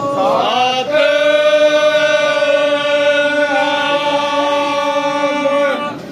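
Devotional chanting sung in long held notes: the pitch glides up in the first second, then one note is held steady for about five seconds.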